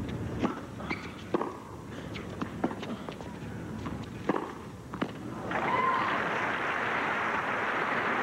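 Tennis racquets hitting the ball in a rally on a hard court: a handful of sharp pops a second or so apart, starting with the serve. About five and a half seconds in, the point ends and a large stadium crowd breaks into applause, louder than the strokes.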